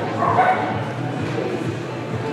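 A dog barking, with a sharp bark about half a second in, over background music and voices.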